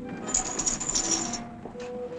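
Curtain rings sliding along a rail as a curtain is drawn: a high-pitched metallic scraping rattle lasting about a second, followed by a couple of light clicks.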